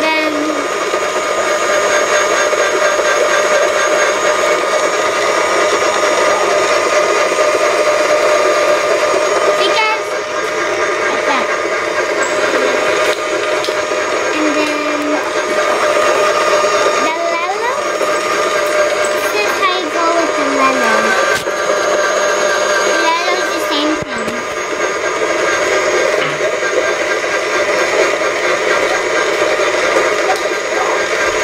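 Battery-powered EggMazing egg decorator spinning an egg: its small motor gives a steady whine with several even tones that holds throughout, while a marker is held to the turning egg.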